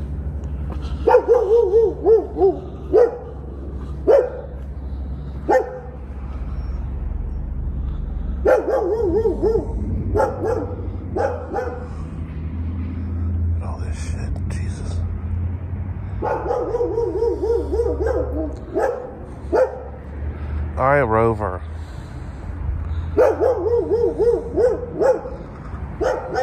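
A dog barking over and over in four bouts of several quick barks, with a few single barks in between.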